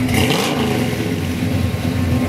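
Loud vehicle engine running and revving, cutting in suddenly, with a dip and rise in pitch about half a second in.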